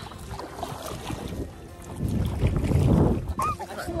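Wind buffeting the microphone out on open water, a low rumble that swells into a strong gust about two seconds in.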